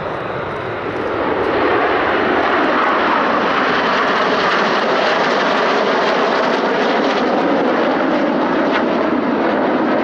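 Formation of BAE Hawk T1 jets passing overhead, the steady rushing noise of their Rolls-Royce Adour turbofans. The noise swells about a second in and then holds loud and even.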